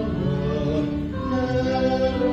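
Church choir singing, holding long notes that move to a new chord about a second in.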